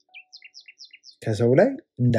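A bird chirping faintly, a quick run of about seven short, high, falling chirps in the first second, then a man's voice speaking loudly.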